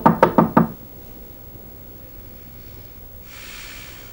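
Knuckles rapping on a wooden door: a quick series of about five knocks within the first second.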